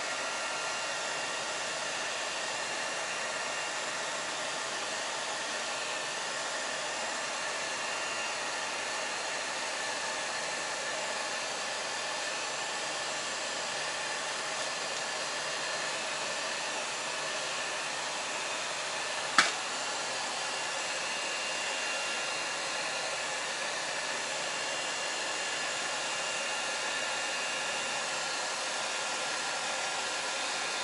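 Electric heat gun running steadily, its fan rushing air with a faint steady whine over it. A single sharp click about two-thirds of the way through.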